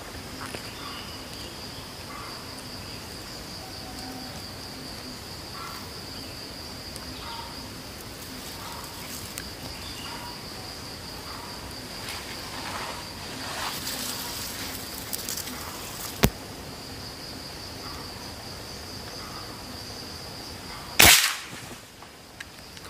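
Steady high insect trilling throughout. A sharp click about three-quarters of the way in, then near the end a single loud shot from a scoped rifle.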